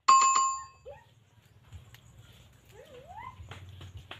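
A single bell-like notification chime, the ding of a subscribe-button animation, ringing out loud at the start and fading within about half a second. It is followed by faint outdoor sound with a couple of short rising calls and a low hum.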